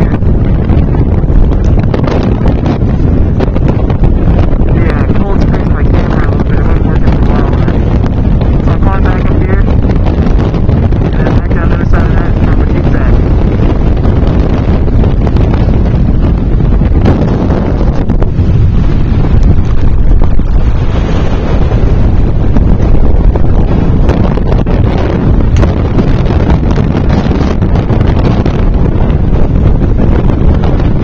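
Strong wind blowing across the camera microphone: a loud, continuous low rumble that rises and falls slightly in level.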